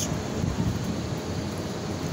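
Steady outdoor street background noise: a low rumble under an even hiss.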